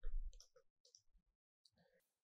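Faint computer keyboard keystrokes: a handful of short, soft clicks spread over two seconds, the loudest right at the start.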